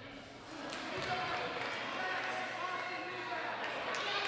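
Spectators talking and calling out, swelling about a second in, with a few sharp thuds of a basketball.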